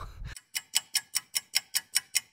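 Ticking sound effect, like a fast clock: sharp, even ticks about five a second over dead silence, starting about half a second in after the outdoor background cuts off abruptly.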